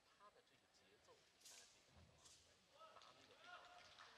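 Near silence in the arena, broken by a couple of faint brief swishes and a soft low thump, with faint distant voices toward the end.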